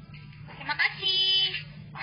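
A high-pitched singing voice with music, holding one note for about half a second in the middle, over a steady low hum.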